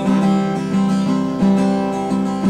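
Acoustic guitar strumming chords at a steady pace, a strum about every three-quarters of a second, with no singing.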